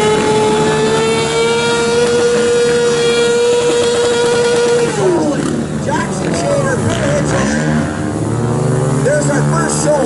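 Sport-bike engine held high in the revs at a steady pitch for about five seconds, then the revs fall away, followed by several quick throttle blips.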